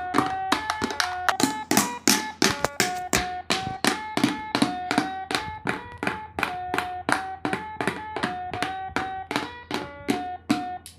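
Battery-powered light-up toy drum playing its built-in electronic tune: a tinny stepping melody over a steady clicking beat of about three or four beats a second, with plastic drumsticks tapping on its top.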